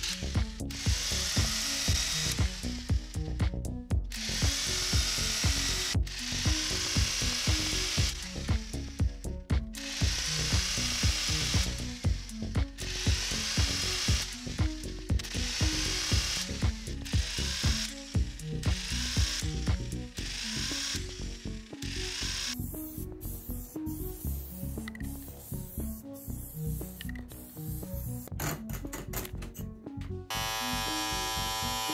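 Electric tufting gun running in repeated bursts of one to two seconds as it punches yarn into burlap backing cloth. The bursts stop about two-thirds of the way through, and music with a steady beat plays underneath throughout.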